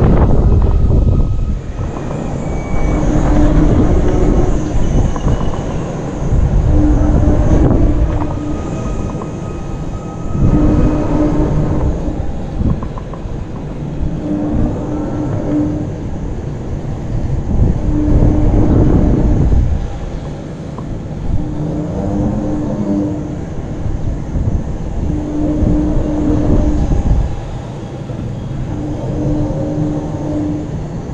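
Wind rushes over the microphone in swells about every three and a half seconds as a giant pendulum ride swings back and forth. A brief steady mechanical hum from the ride sounds on each swing.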